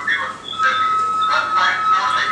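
Indistinct voices of a recorded phone conversation played back over loudspeakers. About half a second in, a steady high-pitched tone starts and holds.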